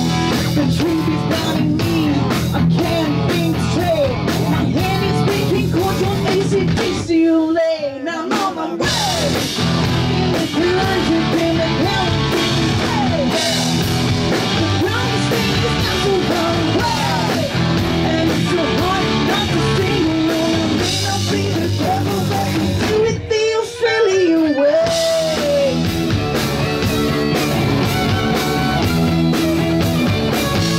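Live rock band playing loudly: distorted electric guitars, bass and drum kit, with a woman singing. Twice, about seven seconds in and again near 23 seconds, the band cuts out for a second or so, leaving a single bending line before the full band comes back in.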